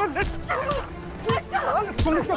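A fistfight: short, sharp shouts and yelps in quick succession, with hit sounds about a quarter second in and a louder one at the end.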